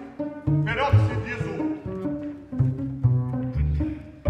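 Chamber ensemble music with a double bass or cello playing a run of short, detached low notes, under a male voice singing a short phrase with vibrato about half a second in.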